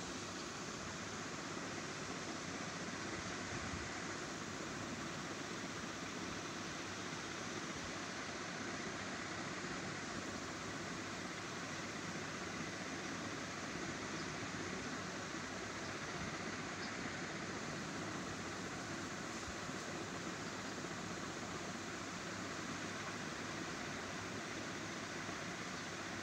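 Steady hiss of background noise at an unchanging level, with no distinct sounds in it.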